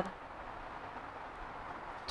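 Faint steady room noise, with one brief click at the very start.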